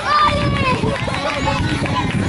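Several people's voices overlapping outdoors, unclear chatter and calls with no single clear speaker, over a steady low rumble.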